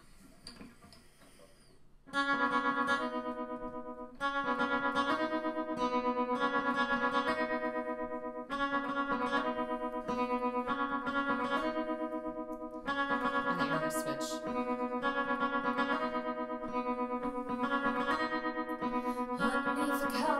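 Acoustic guitar playing a slow instrumental intro through a tremolo effect, so each sustained chord pulses rapidly in volume. It starts about two seconds in, and the chords change roughly every two seconds.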